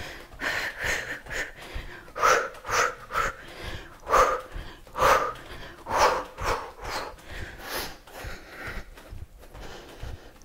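A woman breathing hard in quick, rhythmic puffs, about one or two a second, while hopping in place, with soft thuds of bare feet landing on a yoga mat.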